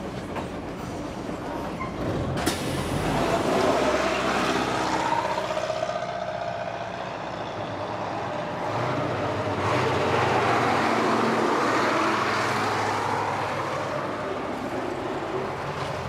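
Road traffic: heavy vehicles passing, the engine and tyre noise swelling and fading twice.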